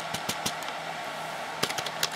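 Computer keyboard keystrokes as the command "load" is typed at a NetWare server console prompt: a few key clicks at the start, then a quick run of clicks near the end, over a steady hum.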